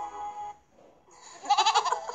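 Soft background music fades out about half a second in. About a second and a half in, a loud, quavering, bleat-like cartoon animal call comes in as a sound effect from the storybook app.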